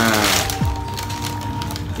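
Background music with steady held tones and a deep falling bass hit about half a second in, over light crinkling of a plastic shopping bag being held up.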